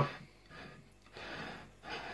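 A person's soft breathing close to the microphone: three quiet, breathy puffs.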